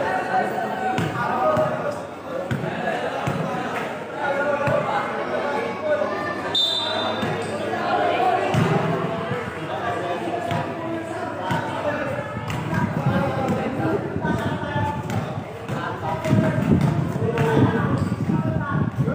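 Basketball dribbled on a concrete court, bouncing repeatedly, with people talking and calling out over it.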